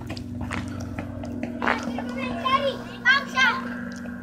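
Children's high-pitched voices calling out a few times in the second half, over a steady low hum.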